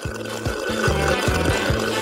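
Green liquid being sucked up through a drinking straw out of a glass jar, a steady slurping noise, over background music with a repeating bass line.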